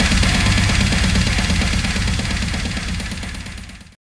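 Brutal slam death metal band playing: distorted guitars over fast, dense drumming, fading out over the last two seconds to silence.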